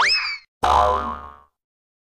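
Cartoon-style edit sound effect: a quick upward-sweeping boing, followed about half a second later by a noisier second effect with a low rumble that fades out within a second.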